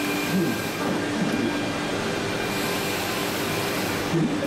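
Steady exhibition-hall din: a constant low hum and noise with faint voices in the background.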